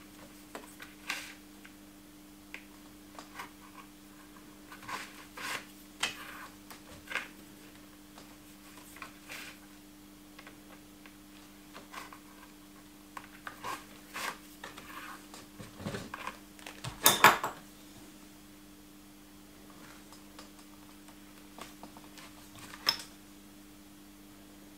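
Hand saddle-stitching leather: irregular small rustles and clicks as the awl pierces the leather and the needles and thread are pulled through the stitch holes, with the loudest flurry about two-thirds of the way through. A faint steady hum runs underneath.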